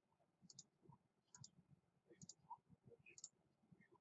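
Four faint computer mouse clicks about a second apart, each a quick press-and-release pair.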